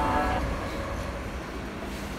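Background music fades out in the first half second, leaving the steady low rumble of a metro train.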